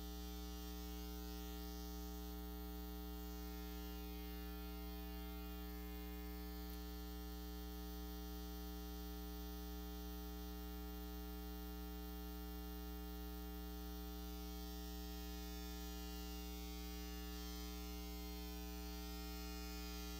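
Steady electrical mains hum, an unchanging low buzz with a stack of overtones.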